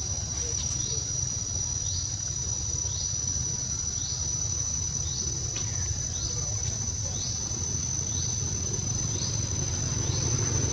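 Insects droning in one steady high-pitched note, with short rising chirps repeating about once a second over a low background rumble.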